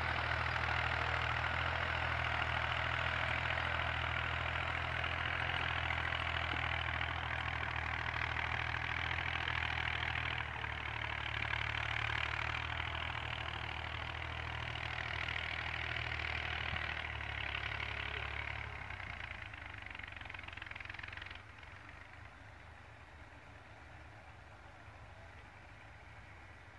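Diesel farm tractor engine running steadily while pulling a cultivator through the soil. Its sound fades after about 19 seconds and drops off sharply a couple of seconds later.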